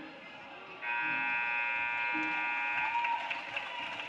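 Basketball scoreboard horn sounding one steady, buzzy blast of about two seconds as the game clock reaches zero: the final horn ending the fourth quarter. Voices and crowd noise from the gym run under it and carry on after it.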